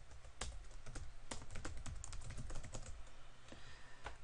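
Typing on a computer keyboard: a quick, irregular run of key clicks as a line of code is entered.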